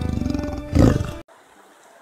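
Intro music ending in a loud big-cat roar sound effect, cut off abruptly just past a second in, then only faint outdoor background hiss.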